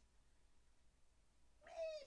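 Near silence: room tone. A woman's voice starts speaking again near the end.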